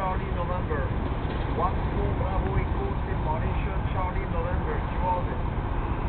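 Indistinct voice talking, too faint to make out words, over a steady low rumble of wind on the microphone.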